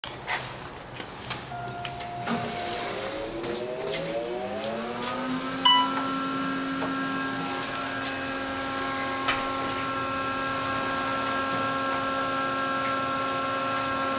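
Hydraulic elevator's pump motor starting up as the car goes up: its hum climbs in pitch for a couple of seconds, then holds steady. A short ding with a knock sounds about six seconds in.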